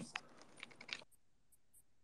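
Near silence: a few faint clicks in the first second, then dead silence.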